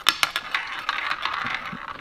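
Small roulette ball clicking in a toy roulette wheel as it is spun: a quick flurry of clicks in the first half second, then sparser, fainter ticks. The ball barely travels round the wheel before settling.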